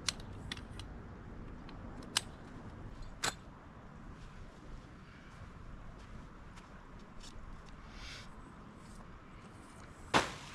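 Tent-pitching gear being handled: a few sharp clicks and clinks, the clearest about two and three seconds in, then fainter ticks and rustles over a low steady background.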